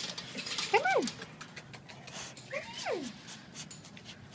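A dog whining twice, each whine sliding steeply down in pitch, with small clicks and rattles between.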